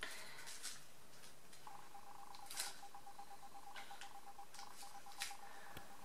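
Faint clicks of a Sony A5100 camera's buttons being pressed by hand, with a steady beep-like tone held for about four seconds from roughly a third of the way in.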